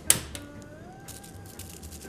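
A single sharp metallic clack as a metal utensil knocks against a frying pan while a wrapped tuna loin is set in it, followed by a quiet stretch.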